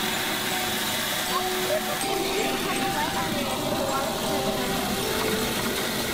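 Steady rushing and churning of water stirred up by a submersible sump pump running in a glass aquarium tank, even in level throughout.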